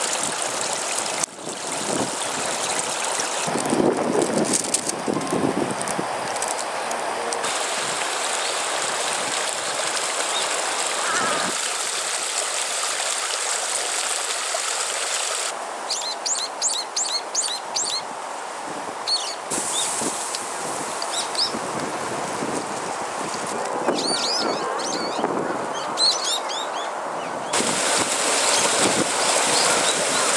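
Water rushing over rocks in a small stream, a steady noise. About halfway through the water sound drops away and a small bird gives repeated short, high chirps for several seconds. Near the end the rushing water comes back.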